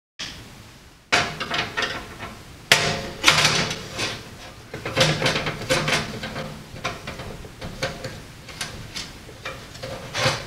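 Screwdriver backing out the small screws that hold a 120 mm rear exhaust fan in a PC case, and the fan being worked loose: a string of irregular metallic clicks, scrapes and knocks, busiest from about three seconds in.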